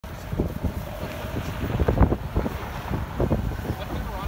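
Wind rumbling on the microphone outdoors, with scattered short knocks and thumps, the loudest about halfway through.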